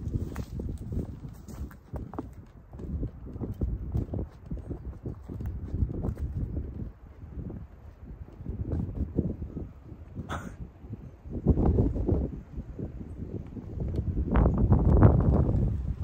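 Wind buffeting the camera microphone in irregular low rumbles, loudest in a long gust near the end.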